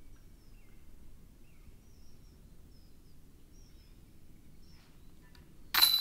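Faint outdoor ambience with scattered small bird chirps. Near the end, a sudden much louder sound with a high ringing tone cuts in.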